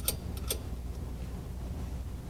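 Two light clicks from a stage rope lock being handled at the locking rail, one at the start and one about half a second in, over a steady low background hum.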